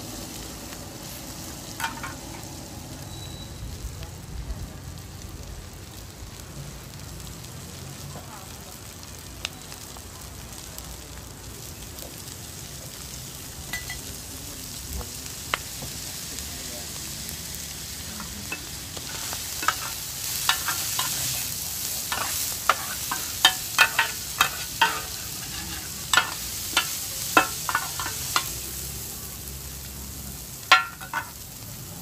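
Egg-batter omelette frying in oil on a large flat steel pan, a steady sizzle that grows louder and brighter about two-thirds of the way in. From then on, quick sharp clanks and scrapes of two metal spatulas striking the pan as the omelette and bean sprouts are turned.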